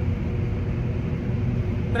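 Self-propelled forage harvester running under load while chopping corn, heard from inside its cab: a steady, even low engine and machinery drone.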